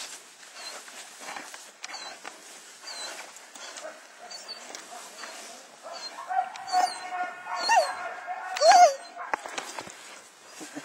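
Young German Shepherd gripping a bite pillow in protection training: scuffling and heavy breathing, then from about six seconds in a sustained high whine that bends up and down twice near the end, the loudest part.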